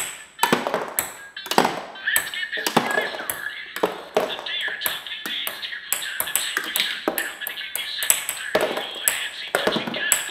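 Ping pong balls tossed one after another, clicking on a stone countertop and into plastic cups, several bounces a second, while the toy's electronic jingle plays.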